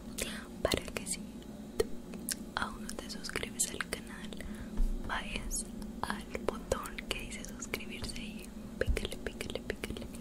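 A woman whispering in Spanish close to the microphone, with many small, sharp clicks between and within the words.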